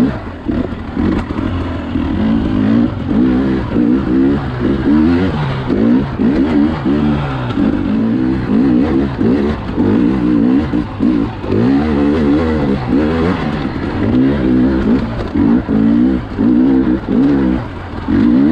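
Dirt bike engine under load on a rocky climb, revving up and down with constant throttle changes, its pitch rising and falling every second or so.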